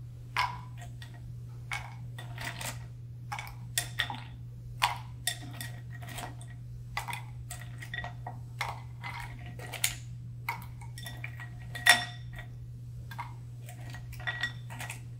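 Ice cubes dropped one at a time into a copper mug, each landing with a sharp clink that rings briefly. The clinks come irregularly, one or two a second, the loudest near the end, over a steady low hum.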